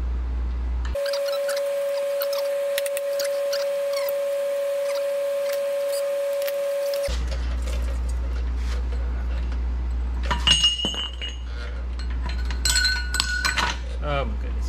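Steel tools and axle parts clinking and ringing against each other as a bushing is worked into a Dana 30 axle with a makeshift steel driver. For several seconds a steady mid-pitched tone runs with scattered light clicks; later come sharp metallic clinks with a ringing note, once about ten seconds in and as a quick cluster near the end.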